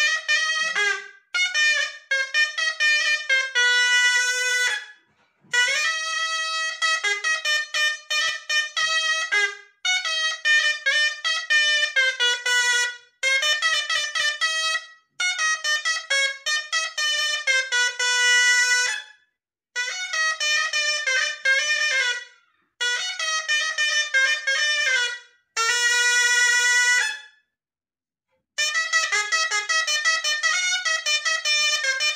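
Moroccan ghaita (double-reed shawm) played solo: a melody of quick, closely ornamented notes in phrases a few seconds long, broken by short silent gaps.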